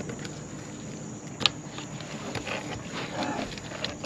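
Handling noises as a caught redfish is measured: one sharp click about one and a half seconds in and a few softer taps, over a steady low hum.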